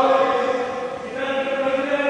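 Men's voices calling out in long, drawn-out, sing-song tones, two held calls one after the other, the second starting a little past the middle.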